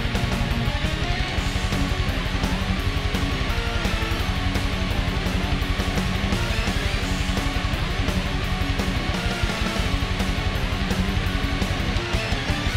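Instrumental heavy metal: an ESP MH400-NT electric guitar played through a Yamaha THR-10X amp, riffing in a fast, even rhythm.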